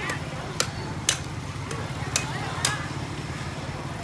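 Coconuts being chopped open with a large knife: four sharp strikes, in two pairs about half a second apart.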